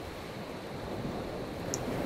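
Steady hiss-like background noise with no clear source, slightly louder toward the end, with one small click near the end.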